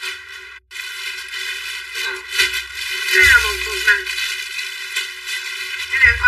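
A woman talking, with music under her voice.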